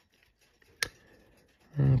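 A single small, sharp click from handling an open pocket watch in the fingers, with a man's voice starting near the end.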